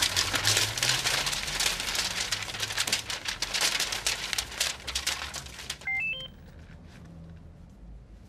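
Paper banknotes rustling and fluttering as a handful of cash is thrown up and falls, a dense crackle that lasts about six seconds. Then a brief run of three rising electronic beeps, and the rustle stops.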